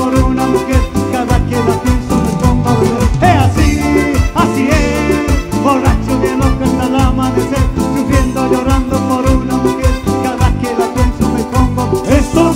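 Live cumbia band music: a steady dance beat of drums over bass and electronic keyboard.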